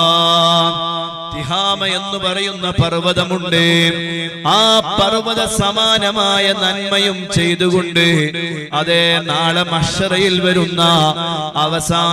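A man's voice chanting in a drawn-out, melodic preaching style into a microphone, with a steady drone running underneath.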